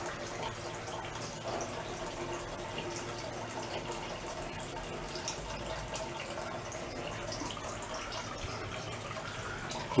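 Water trickling and dripping steadily from a pot still's pump-fed water-bucket cooling system, over a faint low hum.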